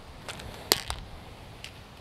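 A golf flagstick being handled and laid on the green: one sharp click about three-quarters of a second in, a fainter click just after it, and a few faint ticks around them.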